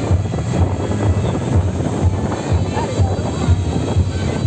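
Loud music with a steady low drum beat, about two beats a second, over a dense hubbub of crowd voices.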